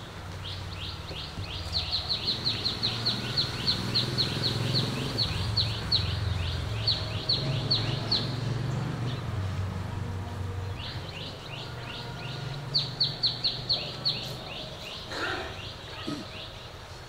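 A bird calling in two long runs of quick, falling chirps, about four a second, the second run starting about eleven seconds in, over a low background rumble.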